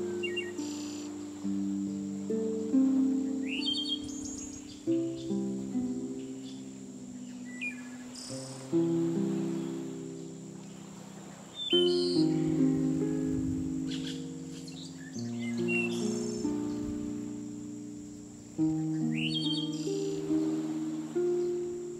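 Slow harp music, plucked notes ringing and dying away in gentle chords. Short bird chirps are laid over it every few seconds, with a thin steady high tone behind.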